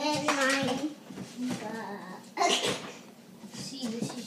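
A child's high-pitched voice, wordless and indistinct, with a short breathy burst about two and a half seconds in.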